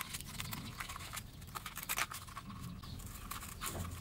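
Scissors cutting through a cardboard tube with a paper template glued to it, a series of short, irregular snips.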